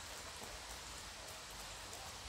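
Canada geese grazing: faint, irregular soft ticks of bills plucking grass over a steady outdoor hiss with a low rumble.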